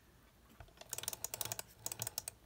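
Recollections adhesive tape runner being rolled across a small square of paper: a quick, dense run of dry clicks and crackles that starts a little under a second in.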